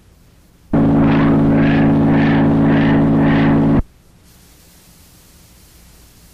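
A loud, sustained droning chord of many steady low tones, with a brighter upper part that swells a little under twice a second. It starts suddenly about a second in and cuts off abruptly about three seconds later, leaving only a faint hiss.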